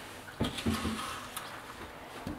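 Metal melon baller scooping a ball out of a halved cantaloupe: a couple of soft knocks and a wet scrape about half a second in.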